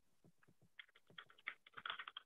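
Faint typing on a computer keyboard, heard through a Zoom call: a few scattered key clicks, then a quicker run of keystrokes from about a second in.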